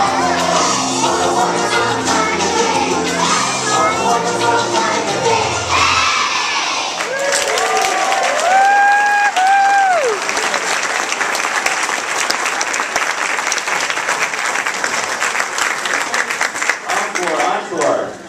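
A class of young children sings along to a recorded backing track, which stops about six seconds in. A crowd then applauds and cheers, with a few high whoops soon after, and the clapping runs on to the end.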